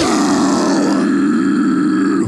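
Harsh metalcore scream, a held growl on one steady pitch, with no music behind it.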